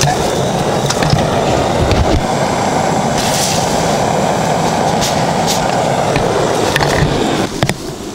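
Beekeeping smoke cannon (dymopushka) blowing a jet of bipin-and-kerosene smoke into a hive entrance to treat the colony against varroa mites. It makes a steady, loud rushing hiss that stops about seven and a half seconds in.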